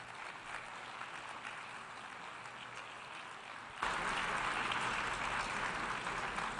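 Audience applauding after a speech, a dense, steady clatter of clapping that builds gradually and then turns abruptly louder about four seconds in.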